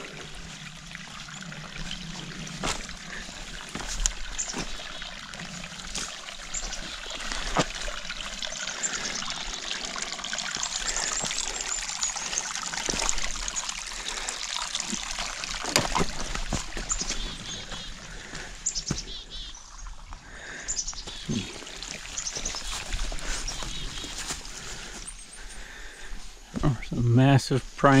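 Water trickling and splashing through a beaver dam of mud and sticks: a steady, fluctuating run of water with scattered short clicks.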